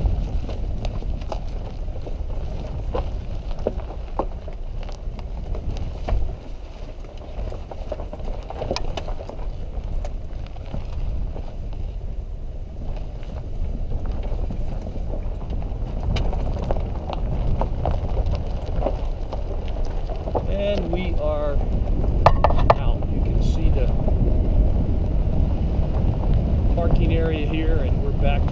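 A vehicle driving slowly over a rough, rocky dirt road: a steady low rumble of engine and tyres, broken by frequent small knocks and rattles as it goes over the bumps.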